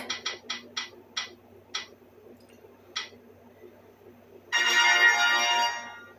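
A name-picker wheel app on a tablet ticking as the spinning wheel slows, the ticks spreading further apart until it stops, then a short electronic winner jingle from the tablet's speaker near the end.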